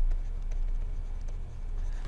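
Stylus scratching faintly as a word is handwritten on a pen tablet, over a steady low electrical hum.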